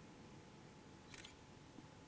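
Near silence: room tone, with one brief cluster of light clicks about a second in.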